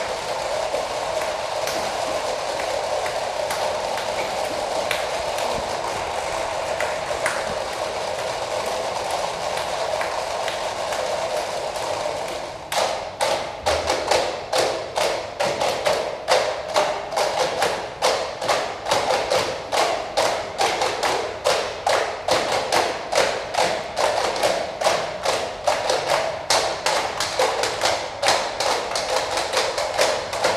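Student percussion ensemble playing. A steady shaking, rustling texture runs for about the first twelve seconds, then sharp, dry wooden clicks come in at a quick, even beat over it.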